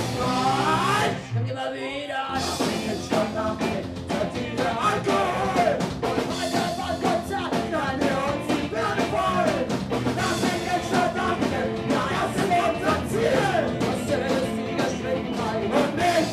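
Live Deutschpunk band playing: distorted electric guitars, bass and drums with a woman singing lead. The band drops out briefly about a second in, then crashes back in.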